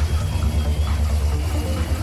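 Electronic dance music from a trance/techno DJ set: a heavy, steady low bass with a thin high note held over it, stepping slightly lower about halfway through.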